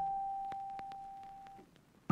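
Background electric piano music: one held note dies away over about a second and a half, leaving near silence at the end.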